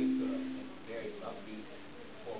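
An mbira (thumb piano) in a gourd resonator: a last plucked low note rings and fades out over about the first second, and the short tune breaks off. Faint voices are heard in the room afterwards.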